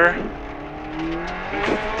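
Turbocharged flat-four engine of a 2000 Subaru Impreza STi rally car heard from inside the cabin, its pitch rising as it accelerates, then falling back a little over a second in, over the hiss of gravel under the tyres.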